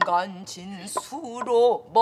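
A woman singing pansori in a long, wavering melismatic line, with a couple of sharp knocks of the stick on a buk barrel drum.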